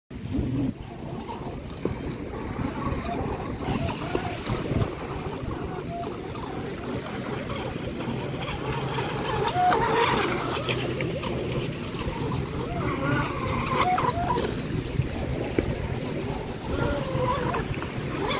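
Radio-controlled model boat running on a lake, loudest as it passes close by about ten seconds in, over small waves lapping and distant voices.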